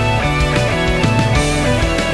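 Rock band music: electric guitar, electric bass and drums playing together, the bass moving between notes under regular drum hits.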